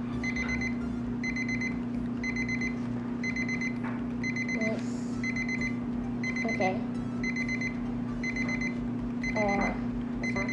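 Electronic alarm beeping in short bursts of rapid high beeps, about one burst a second, over a steady low hum.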